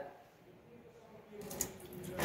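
Near silence, then about one and a half seconds in a kitchen tap is turned on with a click and water starts running into the sink.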